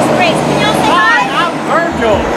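Speech: people talking in lively voices over steady background noise.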